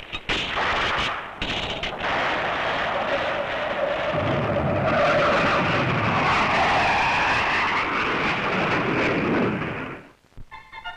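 Mock-battle soundtrack: rapid bursts of gunfire for the first two seconds, then a loud continuous roar whose pitch sweeps down and back up. The roar cuts off just before the end.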